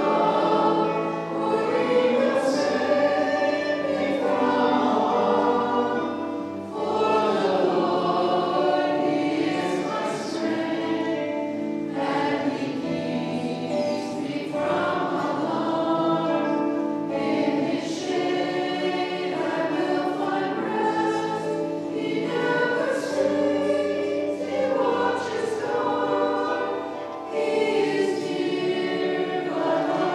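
Church choir singing a liturgical hymn in long sustained phrases, with short breaks about seven seconds in and again near the end.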